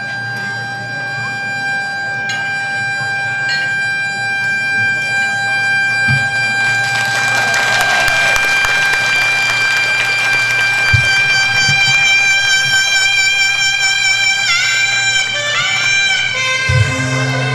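Live band playing an instrumental introduction on saxophone, electric guitar, keyboard and drums, with one long held note running through most of it. A noisy wash swells in about halfway, and sliding, bent notes come in near the end.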